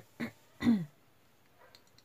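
A woman clearing her throat: a brief sound, then a longer one that falls in pitch, about half a second in.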